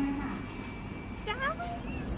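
Background voice murmur, then a short, high, meow-like cry that glides upward about a second and a half in.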